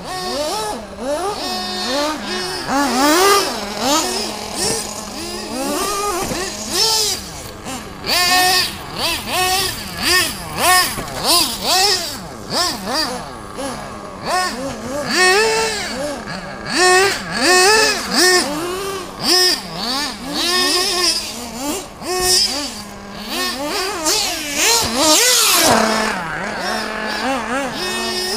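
Several radio-controlled cars' motors revving up and down in rapid, overlapping rises and falls as they race around a track, with a steady drone underneath.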